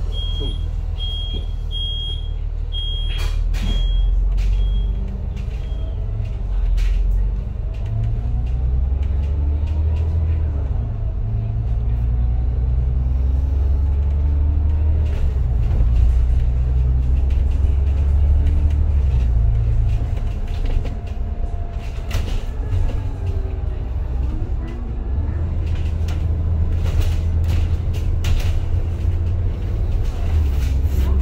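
Double-decker bus's engine and drivetrain pulling away from a stop and gathering speed, a steady low rumble with pitch rising and falling through the gears, and scattered rattles from the bodywork. A run of short high beeps sounds in the first few seconds.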